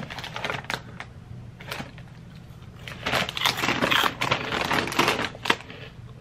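Crunchy snack being chewed close to the microphone: irregular crackly crunches, sparse at first and thickest from about three to five and a half seconds in.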